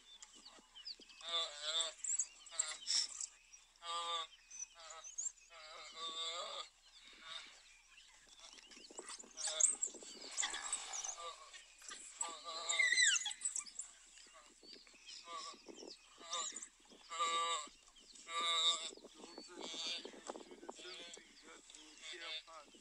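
A prey animal bleating in distress over and over, each call wavering in pitch, as African wild dogs feed on it; high chirping calls cluster in the middle.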